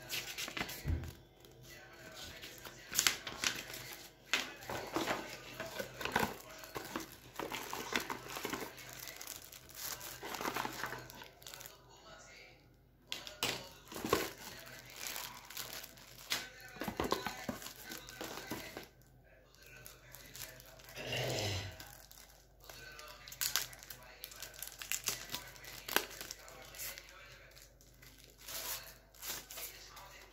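Paper and thin plastic phone packaging crinkling and rustling as it is handled: a white wrapping sheet, a warranty card and a cardboard box, with irregular sharp crackles and occasional tearing.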